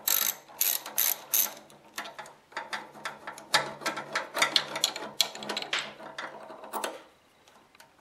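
Socket ratchet clicking in quick runs as it backs out a 12 mm bolt holding a motorcycle fuel tank, turned through a long extension; the clicking stops about seven seconds in.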